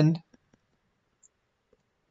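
A few faint clicks of a stylus writing on a tablet screen, in near silence.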